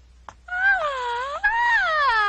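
A young girl's cartoon voice letting out one long drawn-out cry, starting about half a second in, wavering up and down and then falling in pitch.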